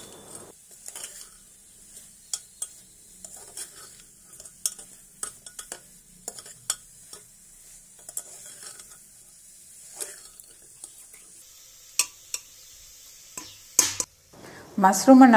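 A steel spoon stirring mushrooms in masala inside an aluminium pressure cooker: irregular scrapes and clicks of metal on the pot over a faint sizzle of frying.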